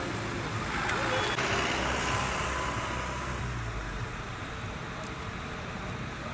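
Steady road traffic noise on a busy multi-lane road, with one vehicle's passing noise swelling a second or two in and then fading.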